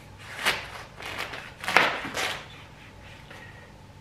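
Kitchen knife cutting through the stem end of a microwaved ear of corn in its husk on a cutting board, in four short strokes over the first two and a half seconds, the third the loudest.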